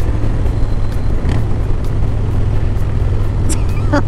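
Heavy wind noise buffeting the microphone while riding a Harley-Davidson Low Rider S at highway speed, with the V-twin engine's steady low drone underneath.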